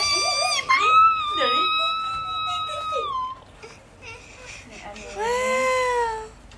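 A young child's voice in two long, high-pitched drawn-out calls: one held for about two and a half seconds starting about a second in, and a shorter one near the end, with a wailing, crying-like quality.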